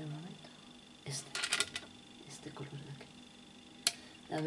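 Light handling noise from a makeup eyeshadow palette: a rapid cluster of sharp clicks about a second in, a few faint taps, and one sharp click near the end. A brief hummed 'mm' comes at the start.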